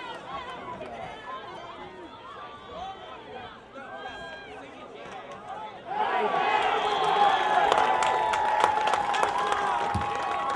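Football crowd in the stands: scattered voices and chatter, then about six seconds in the crowd breaks into loud cheering, shouting and clapping as the play runs, over a steady held note.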